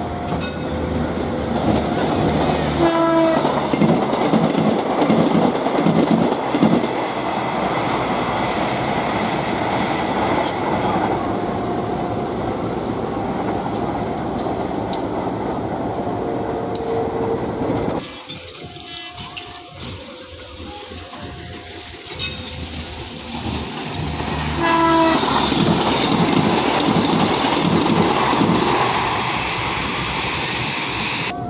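Passenger trains running through on the rails, with the rumble of wheels and engines and several blasts of the train horn. The loudest horn blasts come about three seconds in and again near the end. A second, closer train passes in the last few seconds.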